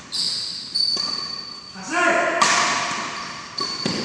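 Badminton rally: several sharp racket hits on the shuttlecock, sports shoes giving a thin high squeal on the court floor, and a voice calling out about halfway through.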